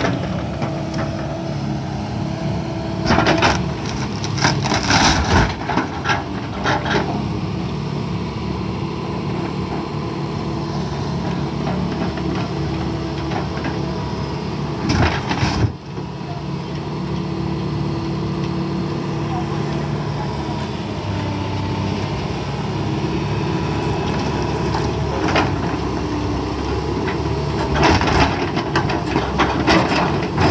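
Wheeled hydraulic excavator's diesel engine running steadily as its bucket smashes an old wooden fishing boat, with loud cracking and crashing of breaking timber about three to seven seconds in, once around fifteen seconds, and again near the end.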